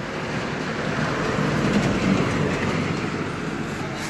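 A road vehicle passing close by: a steady rumbling noise that swells about halfway through and then eases off.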